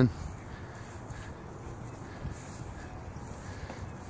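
Steady outdoor background noise, a soft even hiss, with one faint knock about two seconds in.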